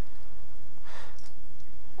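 A single breathy exhale like a sigh, about a second in, with no voiced tone, over a steady low rumble.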